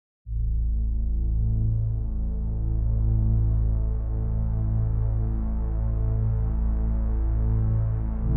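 Deep, steady musical drone with a slight throb, starting just after the opening silence: a low intro soundtrack pad.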